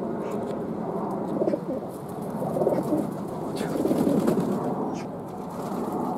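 Feral pigeons cooing close up: low coos that swell in several waves, loudest about four seconds in. There are a few faint sharp ticks.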